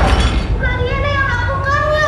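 A young girl's high voice in two drawn-out, sing-song phrases with gently gliding pitch, without clear words, starting about half a second in, after a deep rumble fades.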